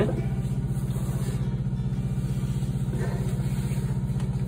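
John Deere CP770 cotton picker's diesel engine running steadily, a low rumble with a fast, even pulse.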